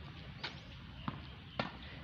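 A tennis ball bounced on a hard concrete court: two short faint knocks, about a second apart.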